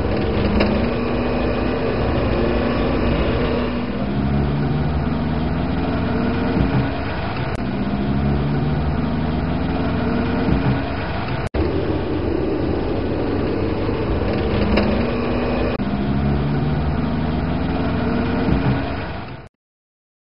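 Car engine heard from inside the cabin while driving, its pitch repeatedly climbing as it accelerates and dropping at each gear change. There is a brief break about halfway through, and the sound fades out just before the end.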